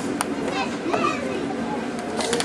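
Young children's voices at play, with one child's rising-and-falling cry about half a second in. Near the start come two sharp clacks: a plastic puck and mallets knocking together on a tabletop air hockey game.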